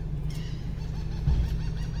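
Steady low hum inside a parked car's cabin with the engine running, with a soft low knock about a second and a half in.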